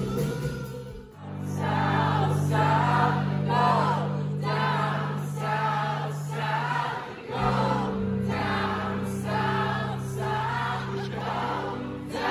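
Live indie rock band playing through the PA. The full band drops away about a second in, leaving a held low chord under rhythmic singing. The chord changes about seven seconds in.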